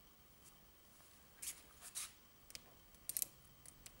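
Faint metallic clinks and rattles of a heavy steel chain and a small padlock being handled, with a quick cluster of sharp clicks about three seconds in.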